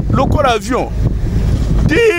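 A voice talking over the steady low rumble of a car driving, with wind buffeting the microphone; the talk stops about a second in and the vehicle noise carries on.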